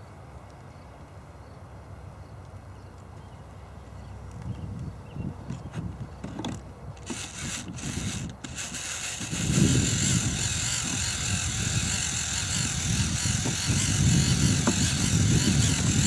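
A few small clicks as the fuel line is handled and connected, then from about nine seconds in a small fuel pump runs steadily, pumping gasoline from the can through the line into the model aircraft's fuel tanks.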